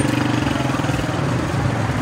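A motor vehicle's engine idling steadily close by, a low even hum with a fine regular pulse.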